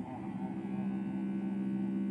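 A low, steady droning tone with several overtones, held without a break: a sustained drone in the film's musical score.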